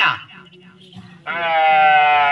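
A man's voice through a microphone and loudspeakers: a short vocal phrase cut off at the start, then, just past halfway, one long held sung note that carries on past the end.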